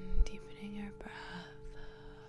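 Soft background music of sustained ringing tones, singing-bowl style, with faint breathy noise over it. A single low thump comes just after the start.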